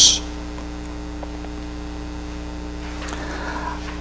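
Steady electrical mains hum with a few evenly spaced overtones, running under the recording at a moderate level.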